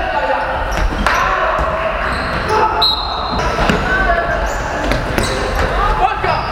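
Basketball bouncing on a hardwood gym floor during play, with players' shouts and calls echoing in a large sports hall.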